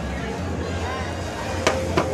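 Steady crowd murmur and low rumble, with a single sharp click near the end as a charging cable is plugged into the phone.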